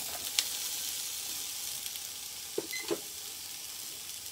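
Strips of green pepper sizzling in hot oil in a frying pan, a steady hiss, with a couple of light knocks a little under three seconds in.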